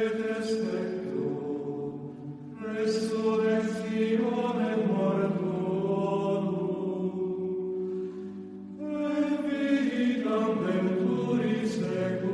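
Sung chant as closing music: a voice holding long, slowly moving notes in phrases, with short breaks about two and a half seconds in and again near nine seconds.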